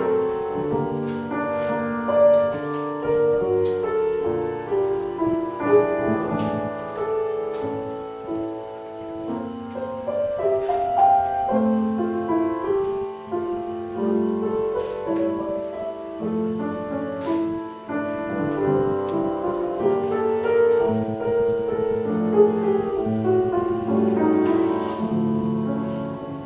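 Grand piano played solo, one continuous passage with many notes sounding together and ringing on over one another.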